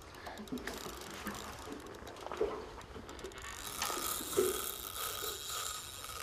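A small Shimano spinning reel working under the load of a hooked snapper: fine clicking early on, then a steadier buzz from a little past halfway, as the drag gives line.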